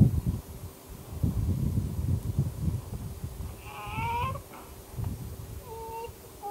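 Low buffeting rumble on the camcorder microphone, then about four seconds in a short, whiny, wavering vocal sound from a baby.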